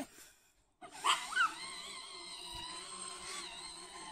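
Electric ride-on toy car starting to drive on grass: its battery motor and gearbox give a steady whine with several high tones that waver slightly. The whine starts about a second in, after two short rising-and-falling chirps.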